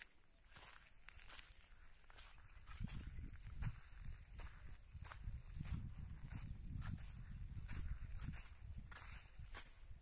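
Footsteps walking on dry dirt, irregular steps heard as short scuffs. A low rumble on the microphone joins them about three seconds in and fades near the end.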